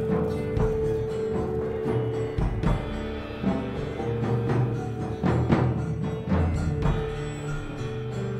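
Live band playing an instrumental passage without vocals: strummed acoustic guitar, electric guitar and drum kit. Several sharp drum hits stand out about halfway through.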